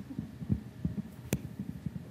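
Handling noise from a handheld microphone as it is carried along and passed to another person: irregular low thumps and knocks, with one sharp click a little past halfway.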